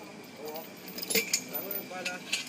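Metal chain clinking and rattling, with a few sharp clinks just over a second in, amid people talking.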